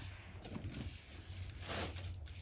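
Faint handling noise from a pebbled-leather shoulder bag being turned in the hand, with a short rustle near the end.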